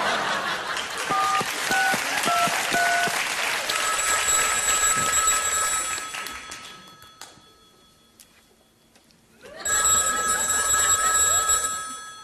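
Audience applause with four short touch-tone keypad beeps, one after another, about a second in as a phone number is dialled. Then an electronic telephone ring sounds twice, about four seconds in and again near the end, with a near-silent gap between.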